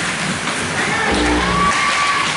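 Ice rink sound during play: background music with the voices and shouts of spectators over a steady noise of the hall.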